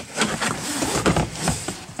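Rubbing, scraping and light knocks as a wallpaper steamer's hose and plastic steam plate are dragged over the car seats into the back of the car.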